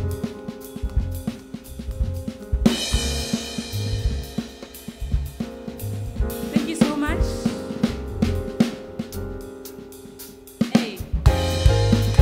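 A live jazz–soul band playing: a drum kit with kick, snare, hi-hat and cymbals drives the rhythm over electric bass and sustained keyboard chords. A bright cymbal crash comes about three seconds in, and the band plays louder again near the end.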